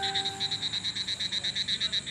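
Night chorus of frogs and insects calling, a rapid, even pulsing of about nine calls a second.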